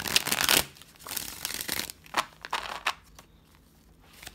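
A deck of tarot cards being shuffled by hand: a loud riffle at the start, then softer shuffling with a few sharp card clicks, dying away near the end.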